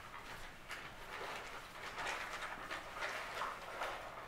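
Soft, irregular rustling with faint small clicks, as of things being handled, with no speech.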